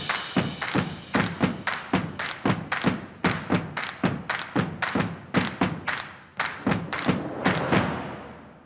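Rhythmic thudding with music underneath, the thuds falling in a galloping pattern of about three every 0.8 seconds, like hoofbeats. It fades out at the very end.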